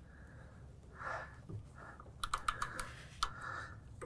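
Ratchet of a click-type torque wrench clicking as a mower blade bolt is tightened, in a quick run of light clicks about halfway through and a few more near the end.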